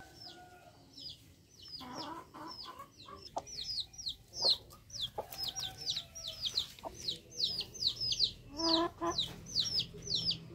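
Chicks peeping over and over: a rapid run of short, high, falling peeps, several a second, with a short lower cluck near the end.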